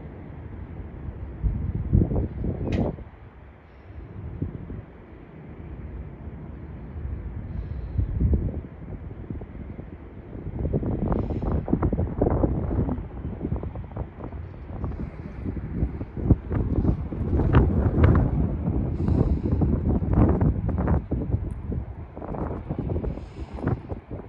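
Wind buffeting the microphone in uneven low rumbling gusts. One brief gust comes about two seconds in, and stronger, near-continuous buffeting comes from about ten seconds in.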